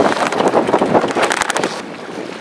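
Strong wind buffeting the microphone over choppy water around a small boat, a rough, gusty rush that eases near the end.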